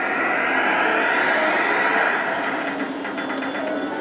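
Legion Warrior video slot machine playing its bonus-transition effect: a whoosh rising in pitch over the first two seconds, followed by the bonus screen's music.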